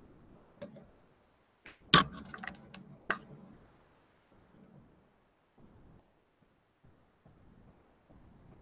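A short run of light clicks and taps, a quick cluster about two seconds in and a last one about three seconds in, then quiet.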